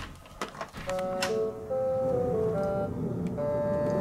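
A door latch clicks sharply as the door is opened, followed by a few lighter clicks. Then background music plays a slow melody of held notes that step up and down.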